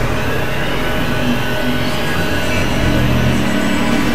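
Experimental electronic drone from synthesizers: a dense, grainy wash of industrial noise over steady low held tones, at an even loudness throughout.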